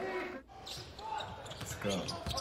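Basketball game broadcast audio at low level: a basketball bouncing on a hardwood court, with a voice under it and a brief drop-out about half a second in.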